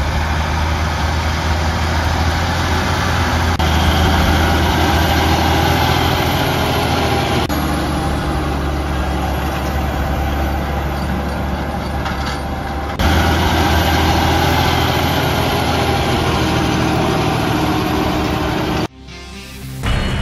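Fendt tractor engine running steadily while driving a bed-forming implement through soil, a dense low drone that shifts abruptly in level twice and stops about a second before the end. Background music sits faintly underneath.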